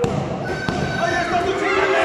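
Thuds of bodies and hands hitting a wrestling ring's canvas, several sharp hits in the first second, over people shouting in a large hall.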